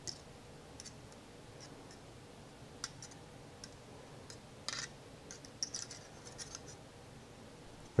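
A metal spoon scraping packed lemon zest off the teeth of a rasp-style zester into a bowl: a scattered run of faint scrapes and light metal clicks, the loudest about three and five seconds in.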